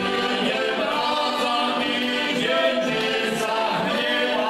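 Three heligonkas (Slovak diatonic button accordions) playing a folk tune, with the players singing together in harmony over them, steadily throughout.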